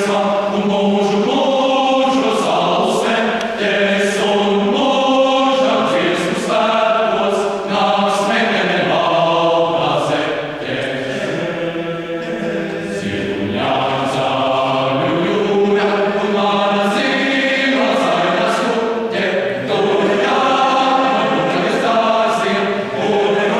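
Choir singing in parts: sustained chords sung in phrases, with a softer passage about halfway through.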